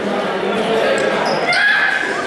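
Students' voices talking and calling out in a large sports hall. About one and a half seconds in there is a short, high squeak of sneakers on the gym floor.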